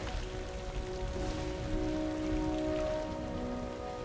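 Heavy rain falling steadily, with long held low notes of a film score sounding underneath.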